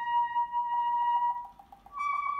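Bass clarinet playing a held high note, with a fast, even pulsing coming in beneath it about midway. The note breaks off about one and a half seconds in, and a new, slightly higher note begins just before the end.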